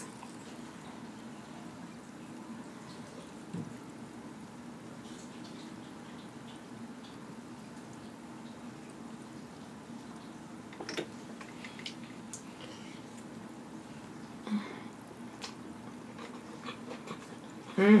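Quiet eating sounds: a few faint spoon clicks and mouth noises as a spoonful of rice is taken and chewed, over a steady low hum.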